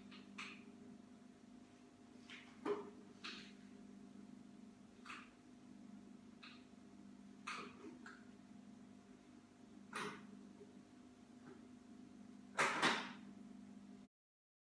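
A steady low hum with a scattered series of short, irregular clicks and knocks, the loudest double knock near the end.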